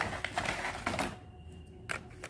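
Rustling and quick light clicks of takeaway food packaging being handled, mostly in the first second, then a few sharp clicks near the end.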